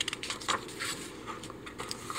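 A picture book's page being turned by hand: soft paper rustling and several light handling taps as the page is laid flat.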